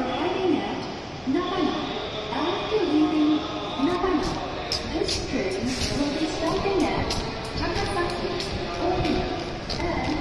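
A public-address announcement over a Shinkansen platform's speakers. From about four seconds in there is also a light, fast ticking, about three ticks a second.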